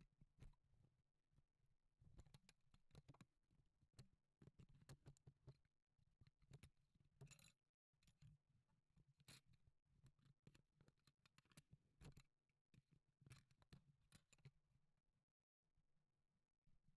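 Faint, irregular clicks, knocks and scrapes of a microphone and its clip mount being handled while it is fitted onto a stand. The sound cuts to dead silence briefly twice, near the middle and near the end.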